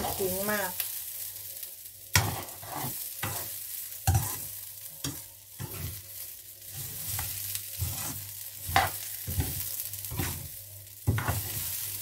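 Raw rice grains and ginger stir-frying in oil in a nonstick frying pan, with a steady light sizzle. A spatula scrapes and knocks against the pan at irregular intervals as the rice is turned. This is the step of frying the rice with ginger before it is steamed for khao man gai.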